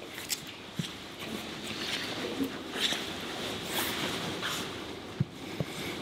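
Jiu-jitsu gi fabric rustling and bodies shifting on a foam mat as two grapplers wrist-fight, in uneven swells of scuffing, with a short sharp knock about five seconds in.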